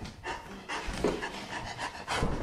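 A person panting heavily, a run of quick, noisy breaths.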